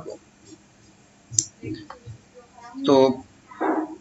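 A man speaking Bengali in short phrases, with a single sharp click about a second and a half in.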